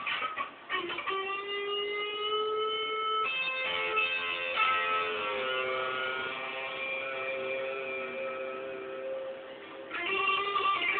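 Hollow-body electric guitar playing long sustained notes that bend slightly in pitch. A fresh note or chord is struck about three seconds in and rings on, fading out near the end.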